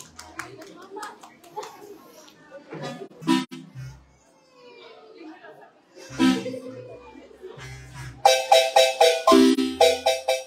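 Voices talking and a few scattered low notes, then about eight seconds in a large Guatemalan wooden marimba played by several mallet players starts up loudly with rapid, rhythmic strikes.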